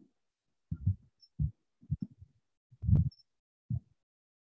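A marker writing on a whiteboard, heard over a video-call microphone as about five short, dull knocks with silence between them, one sharper click among them about three seconds in.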